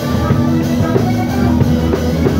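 A live band playing rock-blues: a Stratocaster-style electric guitar, a drum kit, and a harmonica played cupped into a microphone, with sustained harmonica notes over a steady beat.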